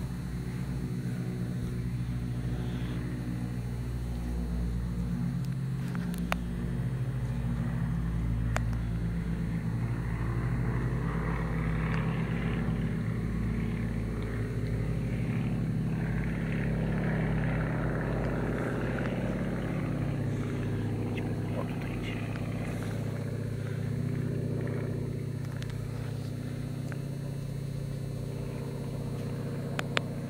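A steady low engine hum whose pitch shifts slowly up and down, with two faint clicks in the first ten seconds.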